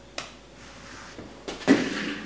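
A boccia ball lands and rolls across a wooden floor, then strikes a small plastic training cone and knocks it away with one sharp clack near the end.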